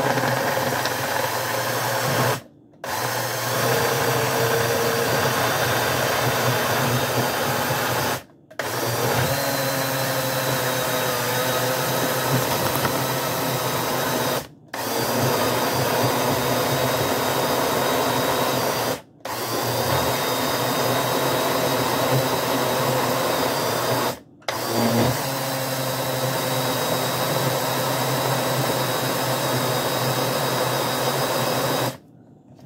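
Single-serve personal blender motor running as it blends frozen strawberries, banana and oats with protein shake into a smoothie. It runs in long stretches and cuts out briefly five times, starting again each time.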